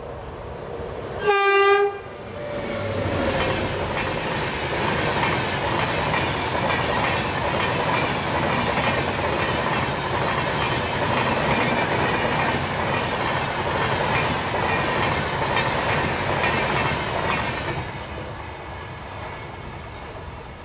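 Mumbai–Pune Intercity Express running through a station at speed without stopping. One short blast of the locomotive horn comes about a second in, then the steady rumble and clatter of the coaches' wheels on the rails, fading near the end as the train draws away.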